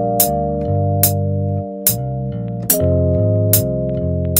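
Electric bass line (Modo Bass 2) played over sustained Rhodes electric piano chords in C minor, with a metronome click on every beat at 72 BPM, about one click every 0.8 seconds.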